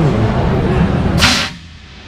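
A single short blast of compressed air from a hand-held, multi-barrel air launcher as its valve is opened. It is a hiss of about a quarter second, a little past a second in.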